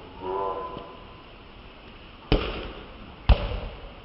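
Two sharp slaps of hands striking a volleyball, about a second apart, the second the louder, after a short shout from a player near the start.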